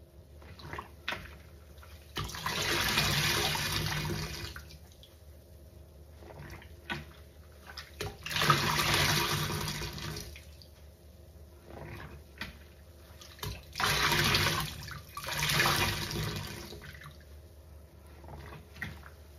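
A sponge squeezed by hand in a sink of soapy water, squelching as the sudsy water gushes out of it. There are four long squeezes, about 2, 8, 14 and 16 seconds in, with soft bubbly crackles between them.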